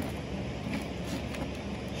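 Steady low background rumble with a faint hum, with a light knock at the start as a tool is set down on the table.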